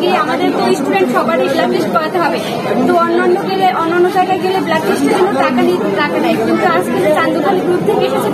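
Speech only: several voices chattering over one another.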